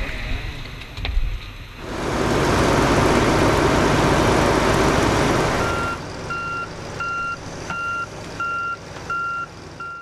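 Heavy logging machinery running, with a loud rushing, crashing noise for a few seconds from about two seconds in. After that a backup alarm beeps steadily, about three beeps every two seconds, over the engine.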